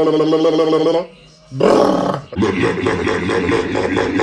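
A man's voice making loud, drawn-out noises instead of words: a steady held tone for about a second, a short cry, then a long, rough, strained yell lasting about two and a half seconds.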